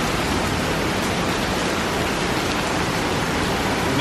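Torrential downpour: heavy rain pouring and splashing onto a flooding pavement, heard from beneath sidewalk scaffolding as a steady, unbroken rush.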